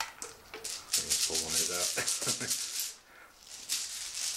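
Plastic order dice rattling as they are shaken in a bag and one is drawn for the next turn, a dense shaking rattle for about two seconds, then a short burst again near the end.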